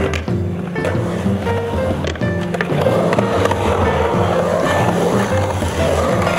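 Music with a steady bass line plays over the sound of a skateboard's wheels rolling and carving on a concrete bowl. The rolling grows louder from about halfway through.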